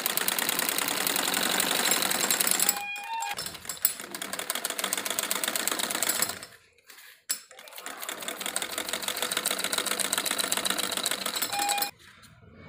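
Domestic sewing machine stitching a straight seam through cotton fabric, running fast and steady. It stops briefly about six and a half seconds in, then starts stitching again.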